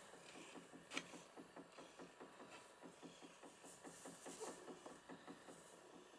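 Domestic cat close to the microphone making faint, soft rhythmic sounds about five a second, with one sharper click about a second in.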